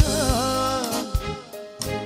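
Romani ballad played by a band with a male singer. He holds an ornamented line that bends and falls, breaking off about a second in, and sharp drum hits follow.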